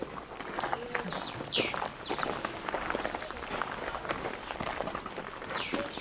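Footsteps of several people walking on a paved path. A bird calls with a short note sweeping down in pitch about a second and a half in, and again near the end.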